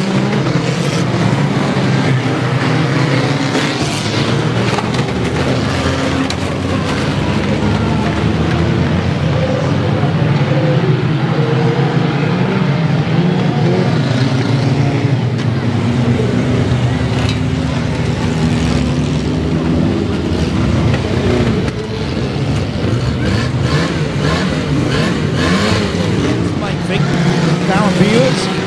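Banger racing cars' engines running and revving continuously as they race. Midway one car's engine is heard from inside its cabin.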